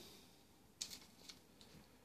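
Near silence: room tone, with a few faint short clicks around the middle.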